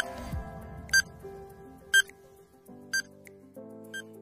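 Quiz countdown timer beeping once a second, short bright electronic beeps ticking off the last seconds, over soft background music.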